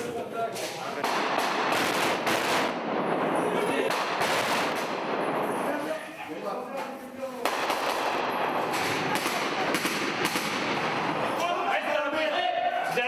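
Bursts of automatic rifle fire, densely packed shots, with a short lull about six seconds in before the firing resumes.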